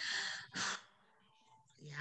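A man sighing: one long breathy exhale, then a short second breath, then quiet.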